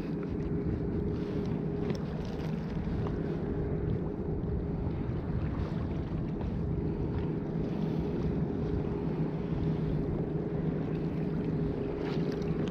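Steady wind and small waves washing against shoreline rocks, under a steady low drone that runs throughout.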